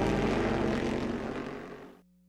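Race car engine running at speed, a steady note of several tones that fades out over about two seconds.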